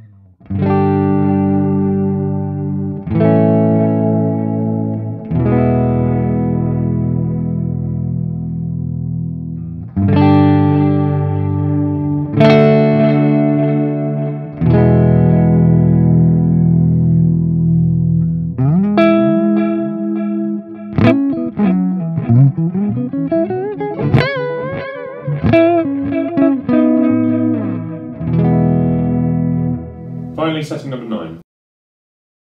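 Electric guitar played through a Cuvave Cube Sugar multi-effects pedal: chords struck and left ringing for a couple of seconds each, then from about 19 seconds in a lead line with string bends and vibrato.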